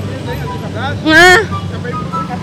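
Steady low hum of motorcycle traffic on a street. About a second in comes a loud, brief vocal exclamation that bends in pitch.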